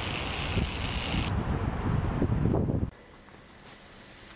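A steady rushing noise, with a higher hiss over about the first second, that cuts off suddenly about three seconds in and leaves only faint background noise.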